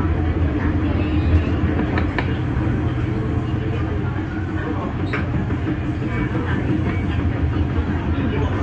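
Disneyland Resort Line modernised electric train running along the track, heard from inside the front car as a steady rumble and low hum of wheels and traction gear. There is a sharp click about two seconds in and another about five seconds in.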